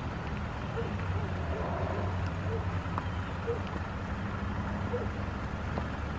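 A car going by on the street, heard as a steady low engine and road hum, with a few faint, short barks from a distant dog.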